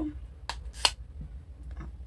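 The plastic inner seal of a loose face-powder jar being pulled off: a few sharp crackling clicks, the loudest just under a second in.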